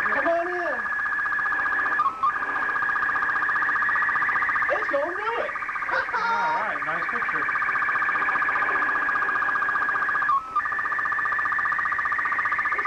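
Slow-scan television signal downlinked from the Space Shuttle Challenger, heard from the ham receiver: a steady high warbling tone with a fine rapid pulse as the picture is sent line by line. It breaks off briefly twice, about two seconds in and near the end, some eight seconds apart.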